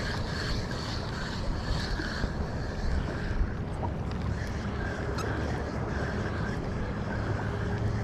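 Wind buffeting the microphone over a steady wash of water around a kayak on open water.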